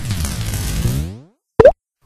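Cartoon sound effect: a pitched sound that falls in pitch and fades away over about a second, followed by a short blip near the end.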